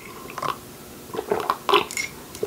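A person sipping a drink from a mug, with several short, soft sips and swallows.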